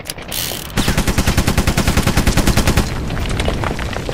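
Rotary machine gun (minigun) sound effect: a short hiss, then a rapid burst of fire at about ten shots a second lasting about two seconds, tailing off near the end.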